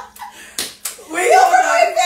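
Two sharp hand slaps, then about a second in a woman's loud, high-pitched, drawn-out voice.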